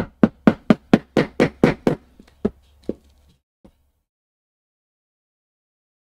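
Mallet striking a pronged stitching chisel to punch stitching holes through ring lizard leather: about a dozen sharp blows at roughly four a second, tapering to a few lighter, sparser taps by about three and a half seconds in.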